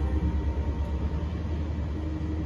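A steady low rumble, with faint steady tones above it.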